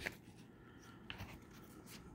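Pages of a CD booklet being turned by hand: a few faint, short paper rustles.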